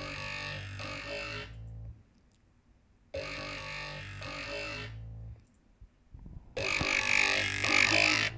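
Dubstep growl bass patch from Native Instruments Massive, its vowel-changing sound shaped by an automated WOW filter, played back as three phrases of about two seconds each with short pauses between. A steady low bass sits under each phrase, and the third is the loudest and brightest.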